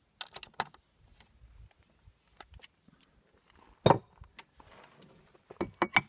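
Metal clicks and knocks of a chainsaw rotary cutting table's locking knob and fittings as it is loosened, swung to a new angle and locked again. A few light clicks come early, one loud knock about four seconds in, and a quick cluster near the end.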